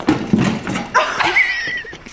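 A person's voice making playful sounds: low voiced noises, then a high, wavering squeal for about the last second.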